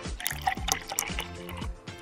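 Background music, with liquid splashing and trickling as a drink is poured from a bottle into a glass.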